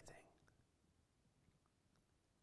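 Near silence: a pause in a man's speech, with the end of his last word fading out just at the start.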